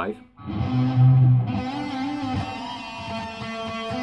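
Distorted electric guitar, tuned to drop C sharp, slides up to the fifth fret and holds a sustained lead note with a wavering, bent pitch, loudest about a second in and ringing on for about three seconds.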